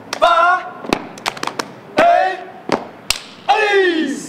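Step routine: three short shouted chant calls about a second and a half apart, with sharp hand claps and body slaps rapping out between them.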